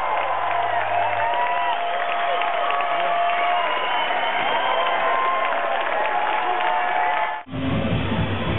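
A large festival crowd cheering, whooping and shouting, many voices at once. Near the end it cuts off abruptly and loud live band music with heavy bass starts.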